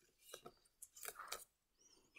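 Faint crinkling of a small sheet of origami paper being folded and creased by fingers: a few soft crackles about a third of a second in, then a short cluster around one second in.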